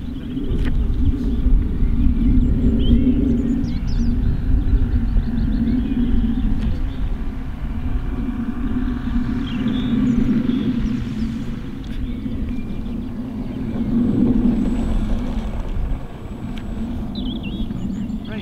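Electric radio-controlled model aircraft's motor and propeller making a steady drone that swells and fades as the plane passes, with heavy wind rumble on the microphone.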